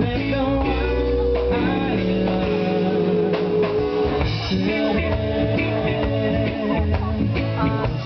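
Live reggae band playing, with ukulele and acoustic guitar strumming over bass and drum kit, and a singer's voice held on long notes.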